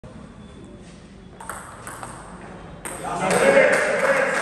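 Table tennis ball striking bats and table: a handful of sharp, ringing clicks spaced roughly half a second apart in a large hall, with voices joining in about three seconds in.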